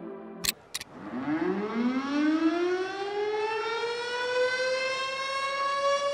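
Air-raid siren sound effect winding up, its pitch rising steadily and levelling off into a held wail, after two sharp clicks about half a second in.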